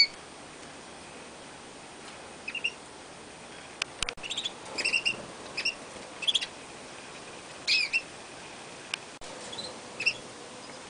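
Canaries giving short, high chirping calls in scattered clusters, with a louder pair of chirps about three-quarters of the way through.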